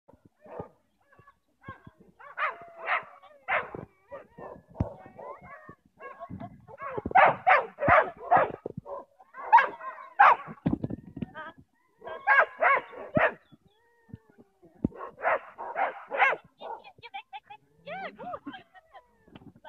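A dog barking in quick bursts of three or four barks, several bursts spread through, while running an agility course.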